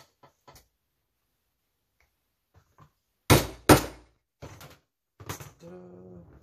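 Two hard, sharp strikes about half a second apart, hammer blows on a metal punch or pin driven through a thick stack of leather layers, followed by a few lighter knocks. A few faint handling clicks come before them.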